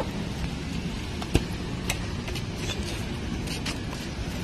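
Steady low rumbling noise on a handheld phone microphone while walking outdoors over paving, broken by scattered sharp clicks, the loudest about a second and a half in.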